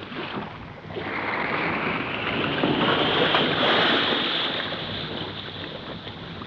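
Radio-drama sound effect of surging water: a rushing hiss that swells about a second in and fades toward the end, standing for a submarine surfacing beside a drifting boat.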